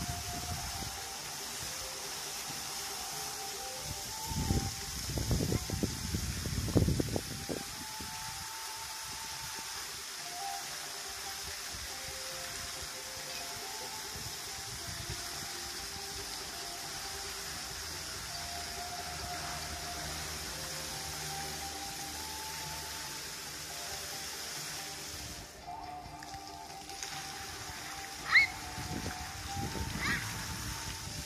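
A fountain show's song plays over loudspeakers, its faint melody carrying over the steady hiss and splash of water jets spraying into a pool. A few low rumbles come about four to eight seconds in, and a short sharp high chirp comes near the end.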